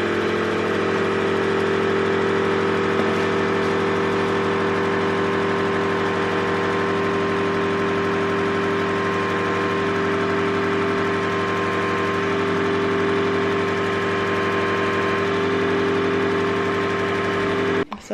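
Suction pump of a facial treatment machine running with a steady, even hum while its handpiece is worked over the skin. It starts abruptly and cuts off suddenly near the end.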